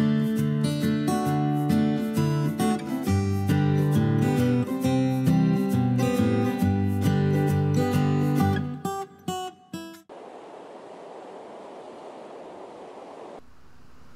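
Background music on acoustic guitar, plucked and strummed, trailing off with a few last plucks about ten seconds in. A steady hiss follows for a few seconds, then after a cut a quieter, even background noise.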